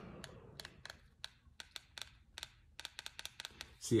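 Quick, irregular clicking of the robot mop's handheld remote-control buttons being pressed over and over, while the robot, which has switched itself off, stays silent.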